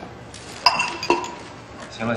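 Two light clinks of a small hard object being handled on a table, about half a second apart, each ringing briefly.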